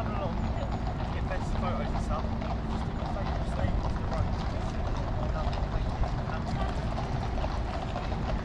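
Outdoor street ambience: indistinct voices of people nearby over a steady low rumble of distant traffic.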